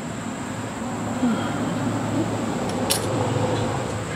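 A flying insect buzzing close by, its pitch wavering, over a steady low hum and a thin high steady drone. A single sharp click comes about three seconds in.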